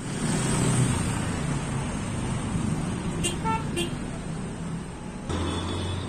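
Road traffic noise: vehicles running past with a steady rumble, and faint voices of people at the roadside. Near the end the background changes to a steadier low engine hum.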